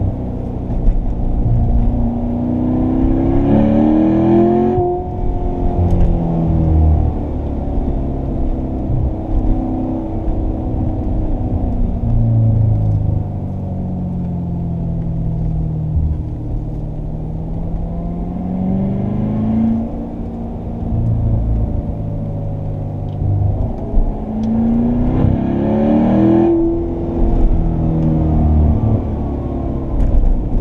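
Corvette Stingray's 6.2-litre V8 heard from inside the cabin, pulling in second gear on a winding road. The revs climb sharply twice, a few seconds in and again past the midpoint, each time cut off as the throttle lifts, and sag and build again in between.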